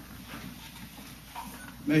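A pause in a man's speech through a hand-held microphone: faint room tone with a low hum, then his voice starts again just before the end.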